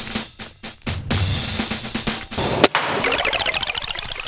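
Background music with a steady electronic beat, which cuts off a little over two seconds in; just after it, a single sharp crack of an air rifle shot fired at a paper target.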